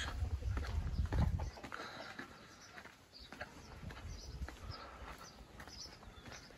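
Footsteps on a dirt and stone path, a series of irregular soft taps. A low rumble on the microphone fills the first second and a half.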